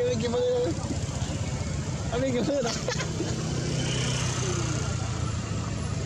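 People talking in snatches, with a vehicle engine running steadily underneath from about halfway through.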